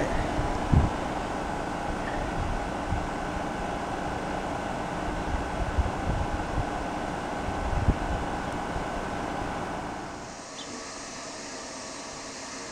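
Rheem 13 SEER three-ton heat pump outdoor unit running steadily in heat mode: fan and compressor noise with a faint steady hum and irregular low rumbles, nice and quiet. About ten seconds in, the sound drops to a quieter steady hiss.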